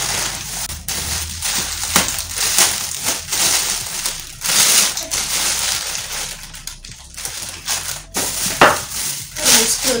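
Plastic bags and plastic wrapping crinkling and rustling as they are handled and pulled apart, on and off, over a low steady hum.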